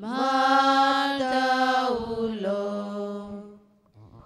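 A single voice chanting a slow, sung prayer response in long held notes. The pitch steps down about two seconds in, and the voice fades out near the end.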